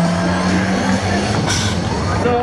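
Loud parade music from a float's sound system, holding a low steady note, with a short hissing blast about one and a half seconds in as confetti cannons fire.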